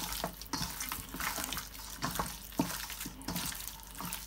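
Hands squeezing and rubbing seasoned raw chicken pieces in a stainless steel bowl: irregular wet squelching with short slaps of meat.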